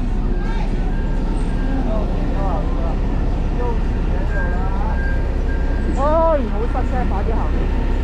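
Street-market bustle: scattered voices of vendors and passers-by over a steady low traffic rumble, with one louder call about six seconds in.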